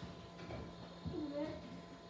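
A child's faint voice answering briefly and softly, over a low steady room hum.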